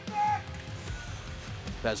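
Background music with steady held tones, under a male play-by-play commentator who speaks a player's name near the end.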